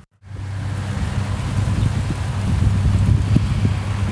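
Wind rushing across the microphone: a loud, even rumbling noise that starts abruptly a moment in and swells slightly toward the end.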